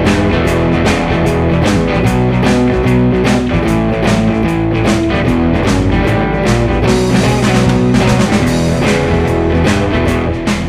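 Electric guitar through an amp playing a fast, driving shuffle blues riff over a backing track with drums, at a steady beat of about 150 bpm. Near the end the riff falters as the pick slips from the player's hand.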